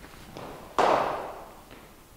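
A cricket bat striking a ball once, a sharp crack with a reverberant tail in the netted hall, preceded by a faint tick.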